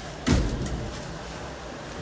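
A thump about a quarter second in, then the steady low rumble of a loaded metal shopping cart rolling across a hard floor.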